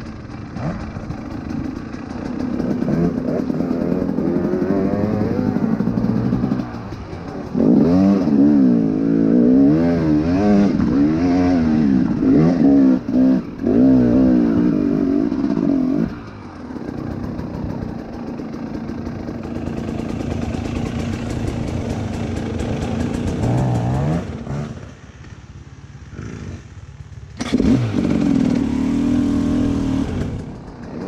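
Dirt bike engine running on a trail ride, its revs swinging up and down again and again as the throttle is worked, loudest through the middle. It drops to a low, quieter run for a couple of seconds near the end before revving up again.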